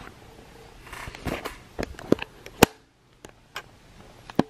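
Handling noise from a compact camera being picked up and carried: a handful of separate clicks and knocks, the loudest about two and a half seconds in.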